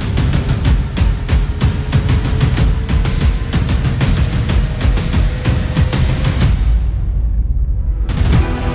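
Background soundtrack music with a steady, driving drum beat and sustained tones. About six and a half seconds in, the high end is swept away, leaving only the bass and drums.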